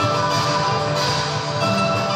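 Music from a Chinese music video playing through a classroom TV's speakers.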